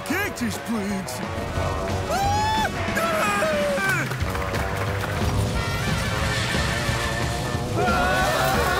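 Cartoon background music over the low rumble of tornado wind, with short vocal cries in the first three seconds.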